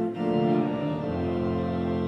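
Church organ playing a hymn tune in held chords, the harmony moving to a new chord about a second in.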